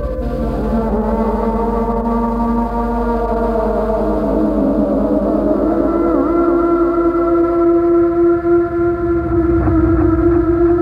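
Electronic music of layered sustained tones, some sliding slowly in pitch. From about four seconds in, one steady tone grows to dominate, with a wavering higher tone above it.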